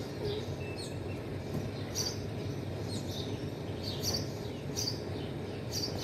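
Small birds chirping in short high notes, about one a second, over a steady low background hum.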